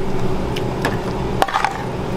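Steady low hum of kitchen equipment with a few short, sharp clinks of a metal ladle against steel pans and bowls as food is served out.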